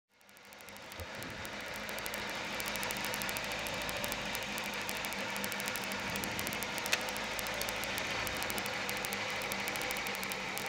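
Lada 21074 Group A rally car's 1.6-litre four-cylinder engine idling, heard inside the cabin: a steady, even running sound that fades in over the first two seconds. One sharp click comes about seven seconds in.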